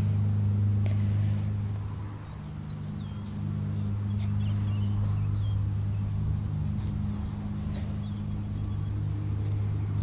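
A steady low engine hum, like a motor idling nearby, swelling and easing slightly, with a few faint bird chirps over it.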